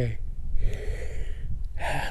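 A man's audible breath, a breathy hiss lasting about a second in the middle, taken between spoken phrases, over a low steady rumble.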